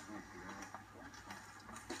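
A quiet lull: faint, indistinct speech over a low steady hum, then a man starts talking right at the end.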